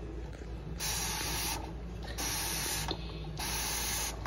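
Three hissing bursts of powdered cleanser shaken from a canister into drinking glasses in a sink.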